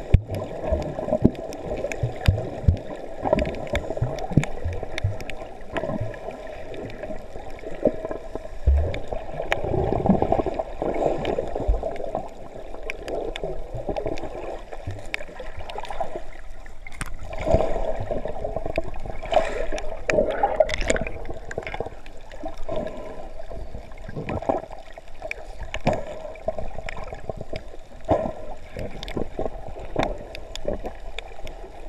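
Water moving around a submerged camera: muffled sloshing and gurgling, with many sharp clicks and crackles throughout, a little busier about two-thirds of the way through.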